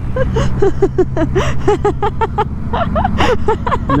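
People laughing in a long run of short "ha" sounds, several a second, over the steady drone of a Suzuki V-Strom motorcycle's engine.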